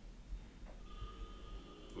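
Quiet room tone: a low rumble, with a faint steady high whine coming in about a second in.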